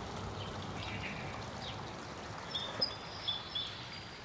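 Faint outdoor background noise, with a few short high chirps from a small bird in the second half.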